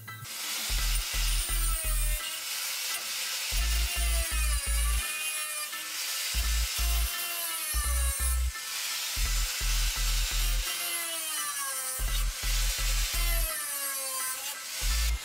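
Electronic background music with a steady bass beat, over the loud hissing whine of an angle grinder cutting through steel reinforcing mesh, its pitch repeatedly dropping as the disc bites.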